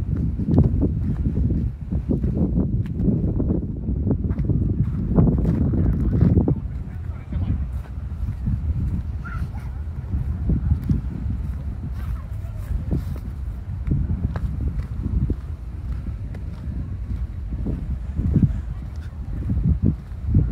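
Wind buffeting the microphone: a low, gusty rumble that rises and falls throughout.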